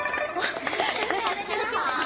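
A plucked pipa note fades out, and then several women's voices talk over one another in excited chatter.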